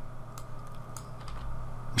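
A few scattered clicks of a computer keyboard and mouse over a low steady hum.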